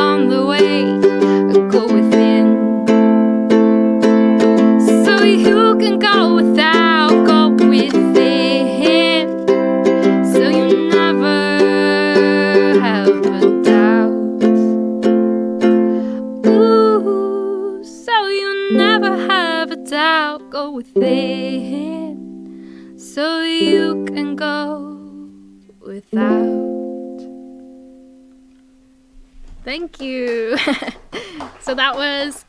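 A woman singing with strummed ukulele accompaniment. The singing stops about 25 seconds in, and a final ukulele chord is struck and rings out, fading over the last few seconds.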